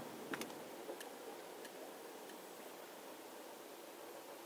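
Faint, even clicking of a car's turn-signal indicator, about one click every two-thirds of a second, stopping around two seconds in as the signal cancels after the turn, over a low hiss inside the car.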